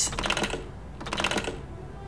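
Computer keyboard keys tapped in two quick bursts of clicks, the first at the start and the second about a second later.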